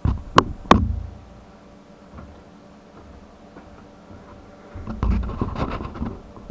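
Two sharp knocks close together as the camera is handled, then low room tone with a faint steady hum. Near the end there is a burst of low rumbling movement noise with small clicks.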